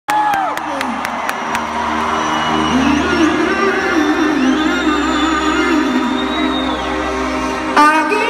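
Amplified live concert music heard from within an arena audience: sustained chords over a low drone, with the crowd cheering and whooping over it. A louder attack comes in just before the end.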